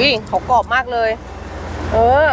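A voice speaking a few short phrases during the first second or so, over a steady low hum of background noise.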